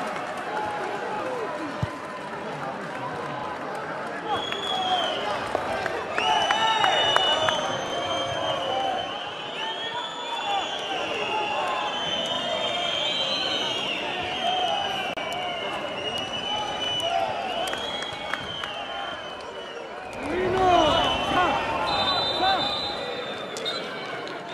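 Football stadium crowd noise with scattered shouts and high, sweeping whistles. About twenty seconds in the crowd noise surges sharply as a chance develops in front of the goal, then eases.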